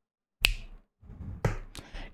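Two sharp clicks about a second apart, each with a short fading tail, and a faint tick between them and the speech that follows.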